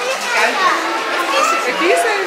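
Children's high voices chattering and calling out, with other people talking around them.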